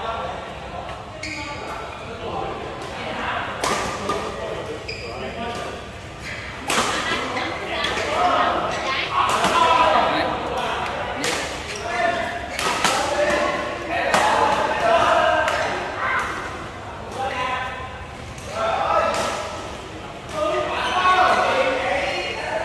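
Badminton rally: sharp smacks of rackets hitting a shuttlecock, many of them from a few seconds in, echoing in a large hall, over players' voices talking and calling.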